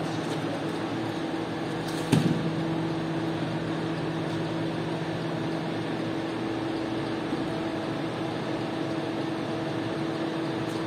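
Steady mechanical hum of workshop machinery in a carpet-washing shop, with a single sharp slap about two seconds in as the wet rug is dropped flat onto the wet floor.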